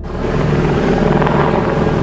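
Helicopter rotor noise, a dense steady beating that cuts in suddenly.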